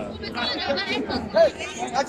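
People talking, with several voices chattering over one another in a crowd.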